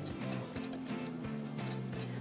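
Soft background music, with light irregular ticks from a wire whisk against a glass bowl as egg yolks are whisked with melted butter poured in a thin stream for hollandaise sauce.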